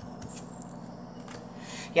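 Faint handling of a tarot card as it is drawn from the deck: a few soft, light ticks and slides over a steady room hiss.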